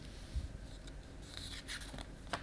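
Paper rubbing and rustling as the pages of a picture book are handled, with a soft low bump early on and a brief hissy rustle in the second half.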